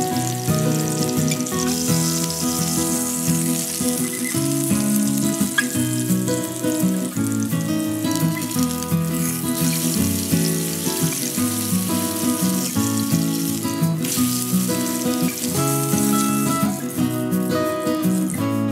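Sous-vide-cooked pork collar steak sizzling steadily as it sears over high heat in an oiled skillet, under background music.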